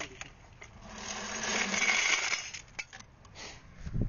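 Loose brass cartridges clinking and rattling together as they are pulled out of a motorcycle and spill. The rattle is loudest from about one to two and a half seconds in.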